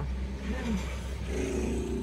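Car engine and road rumble heard from inside the cabin: a steady low drone, with a steady mid-pitched tone joining about a second and a half in.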